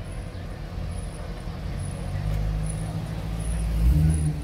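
Low engine rumble of a classic 1950s station wagon driving slowly past, growing louder as it comes closest near the end.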